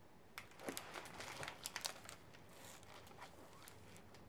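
A large hardcover picture book being handled and closed: a quick run of paper rustles and crinkles from about half a second to two seconds in, then fainter handling.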